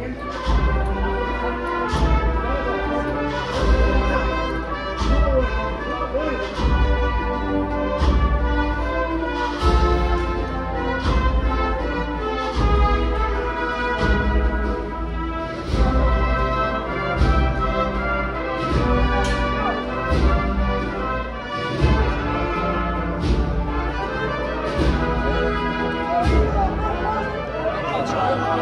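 Brass band playing a Holy Week processional march: sustained brass chords over regular drum beats.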